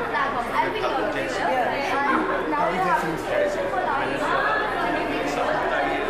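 Speech only: people talking, several voices overlapping.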